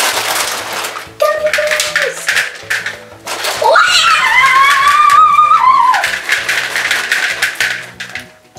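Background music with a steady beat. About three and a half seconds in, a girl gives a long, high-pitched squeal that rises and is held for about two seconds.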